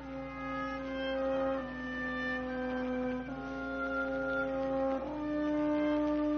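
Live orchestra playing a slow instrumental passage of a hymn, brass leading with sustained chords that change about every second and a half.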